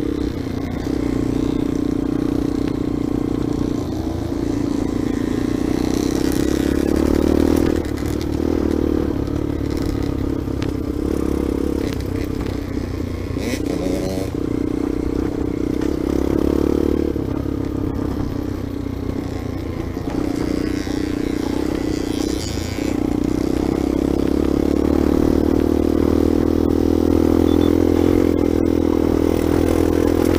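Dirt bike engine running under way, heard from on the bike, easing off briefly a few times and pulling harder over the last several seconds.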